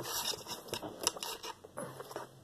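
Pink slime being handled over a squishy toy, giving a run of small sticky clicks and crackles.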